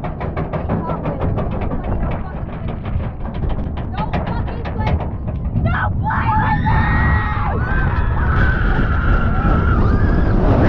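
Roller coaster lift-hill chain and anti-rollback dogs clacking steadily under the train, about five clicks a second. About six seconds in, riders start screaming as the train crests and drops, over a rushing wind-and-track noise that grows louder near the end.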